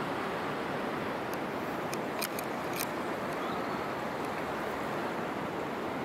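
Steady rush of river water running over a rocky, shallow low-tide riverbed: an even hiss that does not change, with a few faint high ticks a couple of seconds in.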